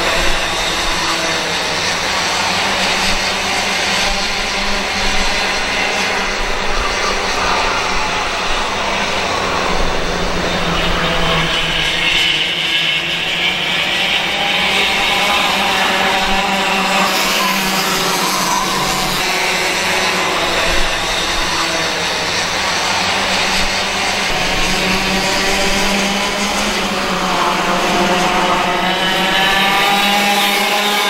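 A pack of small two-stroke racing kart engines buzzing together at high revs, their pitches rising and falling as the karts brake and accelerate through the corners and pass by.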